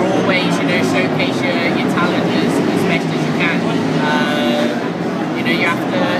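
A man's voice speaking, over a steady low background hum of a busy room.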